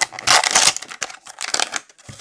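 Clear plastic pack wrapping crinkling and rustling as a pack of graded cards is torn open and pulled apart by hand. The loudest crinkle comes in the first half second or so, followed by lighter rustles and small plastic clicks.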